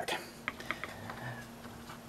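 A few faint, light clicks close together between about half a second and one second in, handling noise as the RC buggy and camera are moved.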